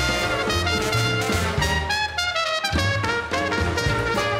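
Traditional New Orleans jazz band playing live: trumpet, clarinet and trombone over banjo, double bass and drums. The bass and drums drop out for a moment about halfway through, then come back in.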